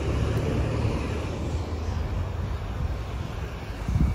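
Steady low rumble of a GMC Sierra 3500's 6.6-litre Duramax V8 turbodiesel idling.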